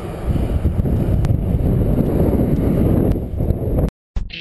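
Wind buffeting the microphone of a moving bicycle, with the rumble of the ride underneath; it cuts off abruptly just before the end.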